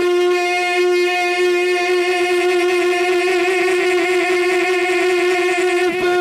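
A man's voice in devotional naat singing, holding one long sustained note through a microphone and PA, steady with a slight waver partway through.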